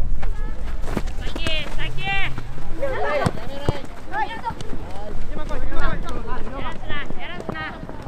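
Children's voices shouting and calling out in short, high-pitched cries across a football pitch during play, with a couple of sharp thuds of the ball being kicked.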